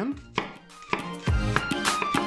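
A couple of sharp knife strokes as a chef's knife cuts down through a half onion onto a wooden cutting board. Background music with a regular beat comes in about a second in and is louder than the cuts.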